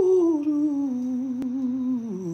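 A man humming a wordless tune, the melody falling gently and settling on a low held note. A faint click sounds partway through.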